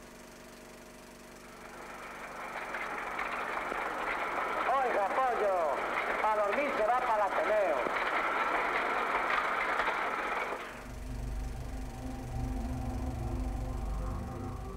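Voice on an old sound-film soundtrack, thin and hissy, fading in about two seconds in, with swooping rises and falls in pitch in the middle. It cuts off about eleven seconds in and gives way to a low steady hum.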